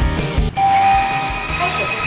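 A lisscode wet-dry floor washer gives one steady electronic beep lasting nearly a second, then starts its recorded voice prompt '開始清潔' ('start cleaning') as its one-touch auto-clean cycle begins. Background music with a beat cuts out just before the beep.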